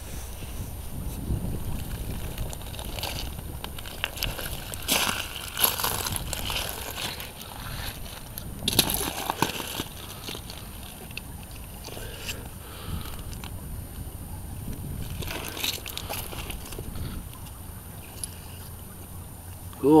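Footsteps wading through a shallow gravel-bottomed creek: scattered sloshes and splashes of water, a few louder than the rest, over a steady low rumble.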